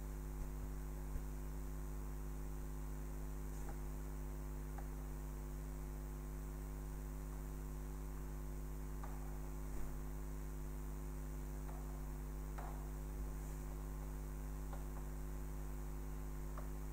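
Steady electrical mains hum, with faint, scattered taps and scrapes of chalk writing on a chalkboard, the clearest about ten seconds in.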